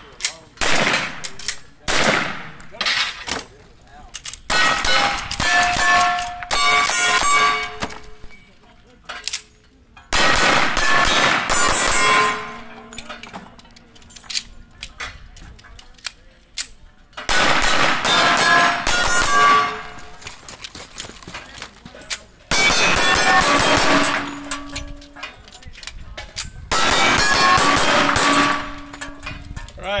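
Strings of rapid gunshots hitting steel targets, each cluster followed by the ringing tones of struck steel plates. The firing comes in about six bursts separated by short pauses.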